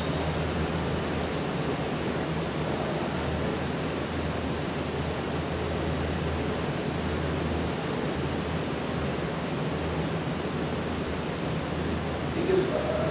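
Steady hiss of room background noise with a low hum underneath that swells and fades, no speech.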